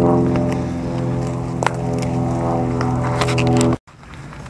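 A steady, low, droning hum held on one pitch, cut off abruptly near the end.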